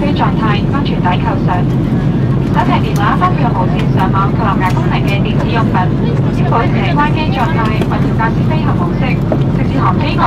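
Steady in-flight cabin drone of an Airbus A340-300, engine and airflow noise, with a voice talking continuously over it.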